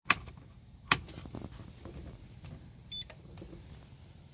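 Two sharp clicks near the start and a single short, high electronic beep about three seconds in, over a low steady hum. The beep comes as the Simrad autopilot controller starts up.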